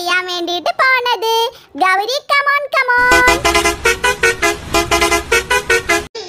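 A high-pitched voice talking for about three seconds, then loud, rapidly pulsing horn-like tones over a low rumble that stop abruptly at the end.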